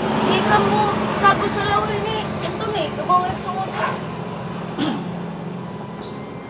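People talking in the background over a steady low drone.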